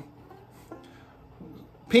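Faint five-string banjo notes ringing quietly for under a second as the fretting hand settles into an F chord shape up the neck.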